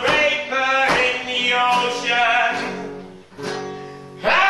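Acoustic guitar strummed in sharp strokes with a man's voice singing over it. The playing thins out and fades about three seconds in, with one last strum near the end.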